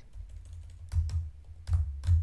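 Computer keyboard typing: a few scattered keystrokes over a faint low hum.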